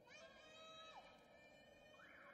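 Faint short electronic musical sting: several held tones start together and one slides down in pitch about a second in, as a broadcast transition sound under an otherwise near-silent feed.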